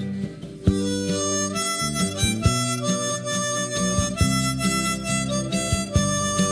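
Music: after a brief dip in level, a harmonica comes in less than a second in and plays a melody of held notes over acoustic guitar.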